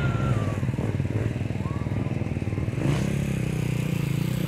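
Dirt bike engine idling with a steady, fast beat, picking up slightly about three seconds in.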